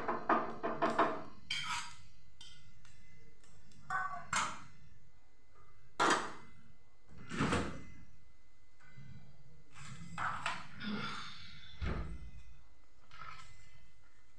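Scattered knocks and clatters of kitchen utensils and containers being handled and set down, about eight separate strokes with pauses between them. Two heavier, deeper thuds, one near the middle and one near the end.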